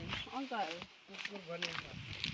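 People talking: short spoken phrases in two bursts, with a pause between them.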